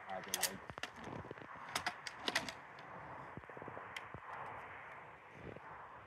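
A few sharp light clicks and clacks in the first two and a half seconds and one more about four seconds in, over a faint steady outdoor hiss.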